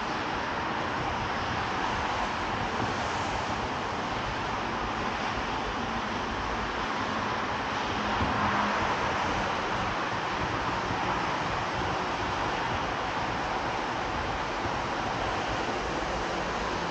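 Steady, even rushing noise of wind and ambient sound at an open-air railway platform, with no distinct events and a slight swell about eight seconds in.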